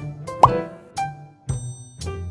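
Light background music of short plucked, keyboard-like notes, with a quick rising plop sound about half a second in.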